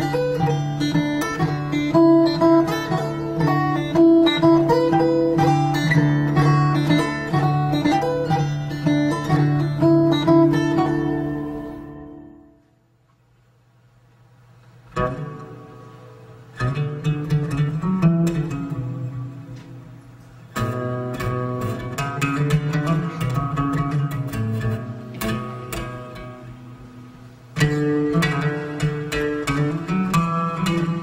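Fingerstyle acoustic guitar in DADGAD tuning: open bass strings keep a steady drone while a melody is picked above it. The playing fades out about twelve seconds in. After a few seconds of near silence, more plucked-string music begins in separate phrases.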